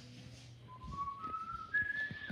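A person whistling a few notes that step upward in pitch, with faint knocks from the camera being handled.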